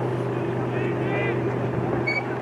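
A steady low mechanical hum, with brief distant shouts from players on the field about a second in.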